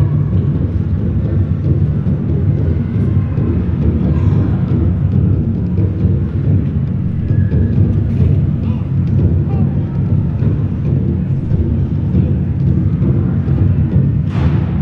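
Steady low rumble of a large venue's background noise, with faint murmuring voices.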